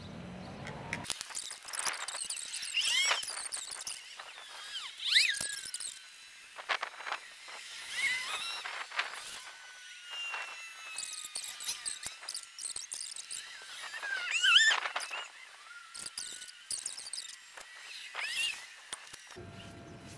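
Soft scratchy strokes of a paintbrush laying primer onto a sanded wooden chair, with birds calling now and then. The loudest calls are about five and fifteen seconds in.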